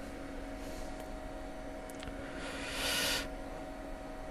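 Faint computer mouse clicks, about one and two seconds in, over a steady low electrical hum on the recording. A brief soft hiss rises and fades near the end and is the loudest sound.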